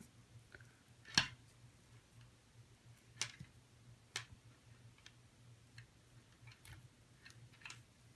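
A few sparse, light clicks, the sharpest about a second in, from fingers handling a loom-band bracelet with metal rings and a braided cord lock as the cord is slid and adjusted.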